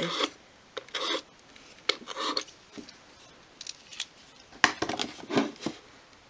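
Craft knife blade scoring and scraping the edge of a small varnished obeche-wood workbench, in a few short scratchy strokes, with a sharper click just before five seconds in.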